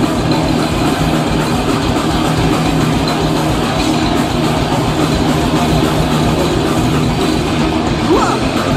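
Live thrash metal band playing an instrumental passage through a stage PA: distorted electric guitars, bass and a drum kit at a steady, loud level, with no vocals.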